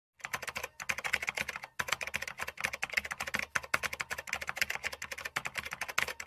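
Keyboard typing sound effect: a rapid, uneven run of key clicks, about ten a second, with two brief pauses near the start, laid under text being typed onto the screen.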